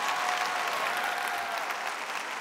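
A large audience applauding: a dense, steady patter of many hands clapping, with a few held voices calling out over it.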